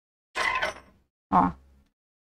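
A brief creaking rub of crocheted t-shirt yarn as the bag is handled and worked with the fingers, followed by a single short spoken word.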